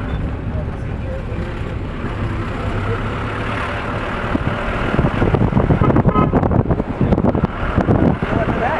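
Steady engine and road rumble heard from inside a moving car. From about five seconds in it turns louder and uneven, with irregular buffeting over the rumble.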